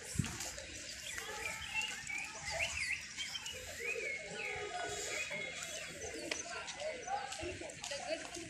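Small birds chirping and singing, a busy run of short rising and falling whistles, over a low murmur of voices.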